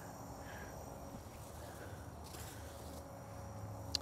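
Faint steady outdoor background, with a soft swish about two and a half seconds in as a thrown 10-foot cast net flies out and lands on grass.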